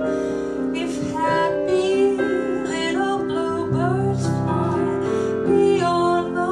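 Woman singing a ballad into a microphone, holding notes with vibrato, over piano accompaniment.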